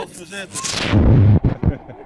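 Loud rumbling and rubbing on a video camera's microphone from handling as the camera is moved, ending in two short knocks.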